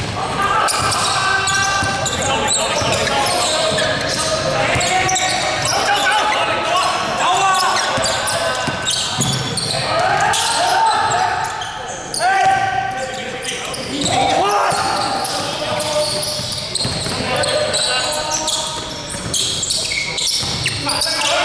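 Basketball game in a large echoing gym hall: players' shouts and chatter go on throughout, with a basketball bouncing on the hardwood floor as it is dribbled, in a series of sharp knocks.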